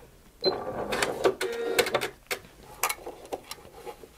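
Bernette B38 computerized sewing machine running its automatic thread-cutter cycle: about two seconds of mechanical whirring and clicking, then a few separate clicks.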